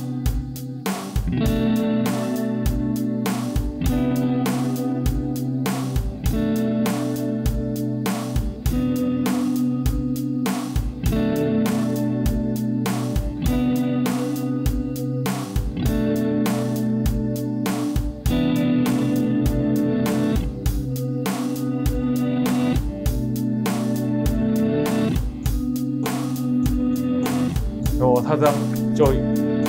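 Electric guitars playing over a phrase looped on a BOSS RC-500 Loop Station and played back in reverse. The sustained notes and a steady pulse repeat as a loop, giving the swelling, psychedelic sound of reversed guitar.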